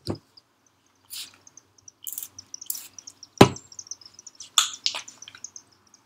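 Pump spray bottle of leave-in conditioner spritzed in three short hisses, followed by a sharp knock about halfway through and a couple of lighter knocks as the bottle is handled.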